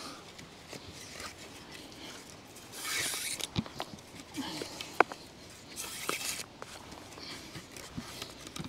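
Cord rasping as it is wrapped and pulled tight around wooden poles in a lashing, in two short pulls about three and six seconds in, with a few light clicks and knocks from the poles.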